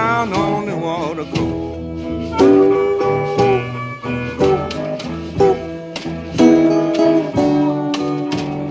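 Chicago blues recording: an instrumental passage between vocal lines, with plucked guitar notes over a steady, repeating low bass line.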